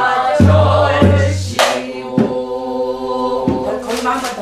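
A woman singing a Korean southern folk song (Namdo minyo) in a full, sustained voice, with deep strokes of a buk barrel drum marking the rhythm: two about half a second apart near the start, then two more later.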